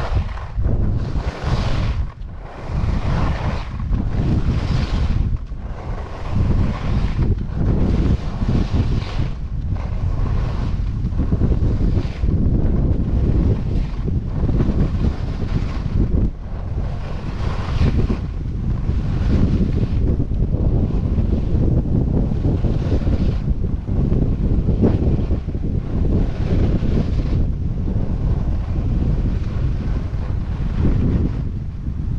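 Wind rushing over the camera microphone at skiing speed, a constant heavy rumble, with the hiss of ski edges carving and scraping groomed snow rising and falling in a regular rhythm of turns, about one every second or so.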